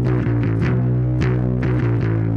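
Fender Mustang Player Series electric bass played through a Dogman Devices Earth Overdrive pedal into a Fender Rumble bass amp. A held low note rings under plucked notes above it, with roughly two pluck attacks a second.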